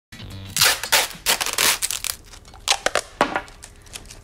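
Several short, sharp rasping noises in quick succession, loudest in the first two seconds, as of something being torn or roughly handled.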